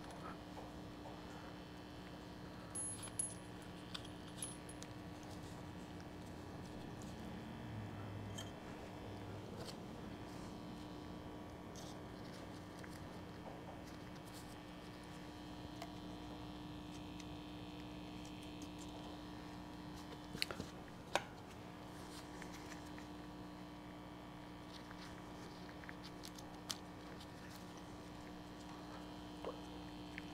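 Faint clinks and clicks of washers and small metal parts being handled on a copper wire at a plating bucket, with a few sharper clicks about twenty seconds in, over a faint steady hum.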